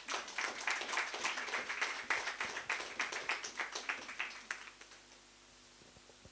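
Small audience applauding, a dense patter of hand claps that thins out and fades away about five seconds in.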